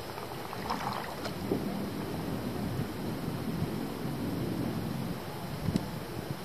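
Water splashing and lapping around an inflatable paddle board being paddled, with wind rumbling on the microphone. A few sharper splashes come about a second in and again near the end.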